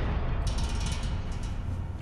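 Intro logo sound effect: a low rumble with dense crackling, fading slowly after a sudden start.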